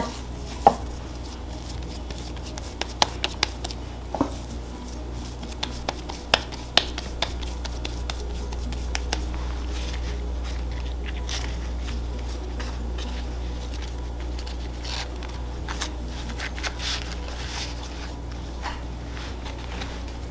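Hands wrapping a ball of masa in corn husks on a wooden cutting board: soft rustling of husk with scattered light taps and clicks, over a steady low hum.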